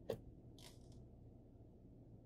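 Near silence inside a stopped car: a faint, steady low hum, with one small sharp click just after the start and a short soft hiss about half a second later.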